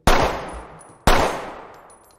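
Two pistol shots about a second apart, each sudden and loud, then ringing out and fading.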